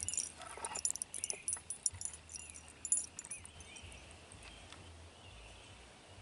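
Faint outdoor field ambience: a few distant bird chirps over a low wind rumble, with small ticks and rustles close by during the first few seconds that then die away.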